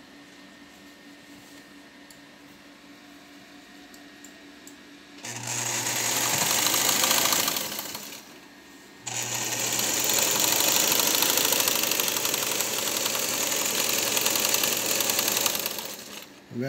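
Vigorelli Robot electric sewing machine sewing a stitch on fabric in two runs: it starts about five seconds in, stops briefly after about three seconds, then runs steadily again for about seven seconds, stopping just before the end. A low steady motor hum sits under the fast needle mechanism.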